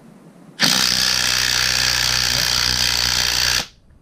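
Ryobi cordless impact tool hammering on the forcing screw of a three-jaw gear puller, drawing a tight bearing off a gearbox shaft. It runs steadily for about three seconds, starting about half a second in and cutting off just before the end.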